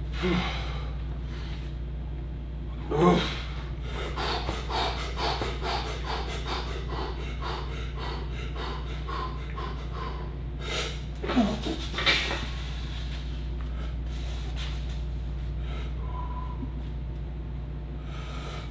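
A lifter's sharp, forceful breaths as he braces under a loaded squat bar: a run of quick breaths at about two a second, then two louder heavy breaths about halfway through. A steady low hum sits underneath.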